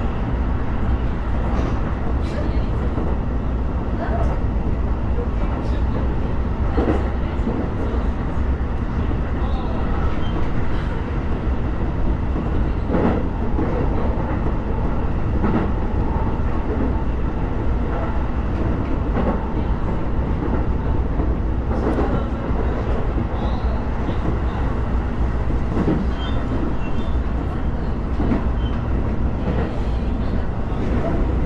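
Sotetsu commuter train running at speed, about 65–75 km/h, heard from inside the passenger car: a steady low rumble with scattered clicks and knocks from the wheels and running gear.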